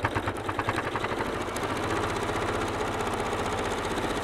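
Elna electric sewing machine stitching fast, top-stitching along a zip. The needle's rapid clatter starts at once, picks up speed over the first second, then runs at a steady fast rate.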